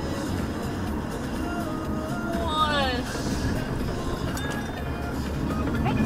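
Music from a car radio heard inside a moving car, over the steady low rumble of the engine and road.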